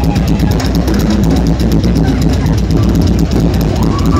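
Live rock band playing loudly, the drum kit driving a fast, even beat of rapid strikes over a heavy low end.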